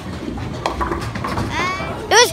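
Bowling alley noise: a low rumble of rolling balls, with a clatter of pins from about half a second to a second in.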